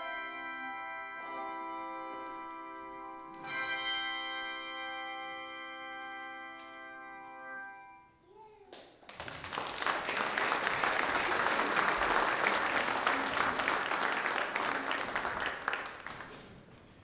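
Handbell choir ringing a final sustained chord, struck again a few seconds in, the bells ringing on and dying away about halfway through. Then the congregation applauds until the end.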